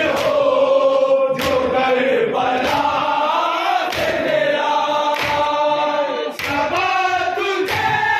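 A men's group chanting a noha (Shia lament) in unison, with the crowd striking their chests together in time (matam), a sharp slap about once every second and a quarter.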